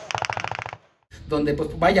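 Machine gun firing a rapid burst of automatic fire, an even string of sharp shots that cuts off abruptly under a second in.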